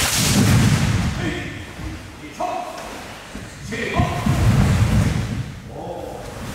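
A class of karateka moving in unison: bare feet thudding on a wooden hall floor and uniforms rushing with each technique, in two loud surges about four seconds apart. Each surge follows a short shouted call.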